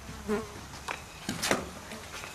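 A housefly buzzing, with a few light knocks and clicks, the loudest about a second and a half in.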